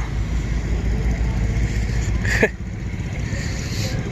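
A small engine idling steadily, with one short sharp sound a little over halfway through.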